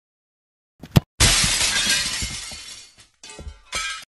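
Breaking-glass sound effect: a sharp crack about a second in, then a crash of shattering glass that fades over about two seconds, with a few last tinkling pieces near the end before it cuts off abruptly.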